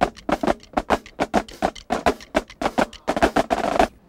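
Marching drumline snare drums playing a fast cadence: sharp, crisp stick strikes about four to five a second, crowding into a quicker run near the end.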